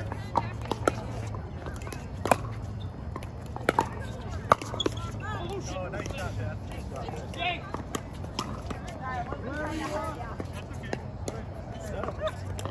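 Pickleball paddles hitting a perforated plastic ball during a doubles rally: sharp pops at uneven intervals of about a second, most of them in the first five seconds. Voices from nearby courts carry on underneath.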